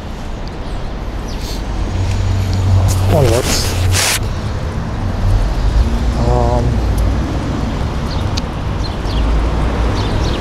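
City street traffic: a steady low rumble of passing vehicles, with a short rush of noise about three to four seconds in and a couple of brief voice sounds.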